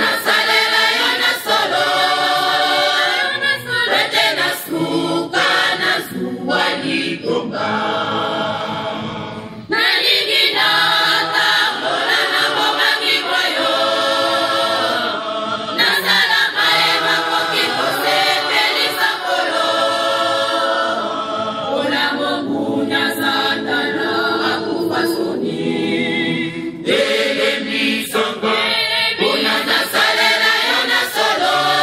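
Mixed choir of men and women singing in several parts, with long held chords; the singing dips briefly about a third of the way through, then comes back in at full strength.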